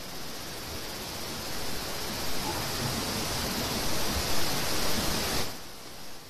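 Steady hiss of background noise picked up by an open video-call microphone, cutting off abruptly about five and a half seconds in.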